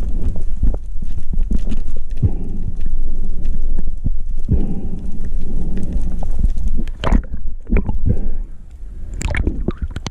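Underwater water noise on an action camera in its waterproof housing: a low rumble with gurgling surges of moving water, then a few sharp clicks and knocks in the second half, quieter near the end.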